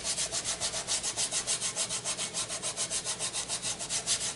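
Fingertips rubbing quickly back and forth over microfine glitter stuck on double-sided adhesive tape on a card panel, in a fast, even scrubbing rhythm. This is the glitter being burnished into the tape by hand.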